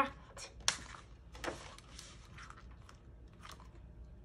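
A page of a picture book being turned by hand: a crisp paper flick, then a short, faint rustling swish of paper.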